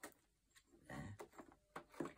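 Faint handling sounds: a few soft clicks and rustles as small plastic bags of diamond-painting drills are handled and filed into a binder, a little louder about a second in.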